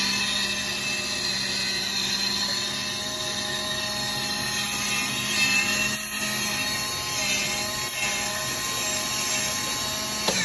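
Worn 12-volt Ametek DC air induction blower motor of a Nieco conveyor broiler running with a steady, high screaming whine over a harsh rushing noise. The sound means the motor is failing and close to dying.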